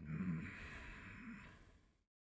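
A person's long, breathy sigh with a faint low murmur in it, fading out about a second and a half in.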